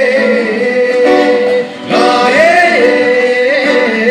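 A man singing a held, wavering melody line into a microphone, with acoustic guitar accompaniment; the voice breaks off briefly about two seconds in and then slides back up.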